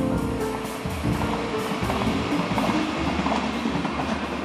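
Jazz piano music fading out while the rumble of a train on the rails grows beneath it and takes over, with faint clattering from the wheels.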